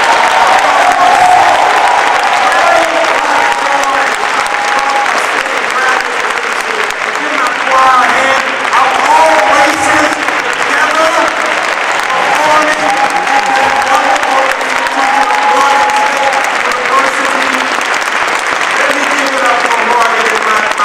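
An audience applauding steadily, with a man's voice carrying over the clapping in places.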